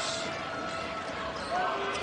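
Arena crowd noise with a basketball being dribbled on the hardwood court, heard through a TV broadcast. A commentator's voice comes back in near the end.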